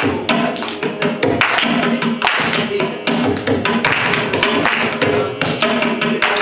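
Mridangam played in fast stroke patterns, dry taps mixed with ringing strokes on the tuned head, over a steady drone.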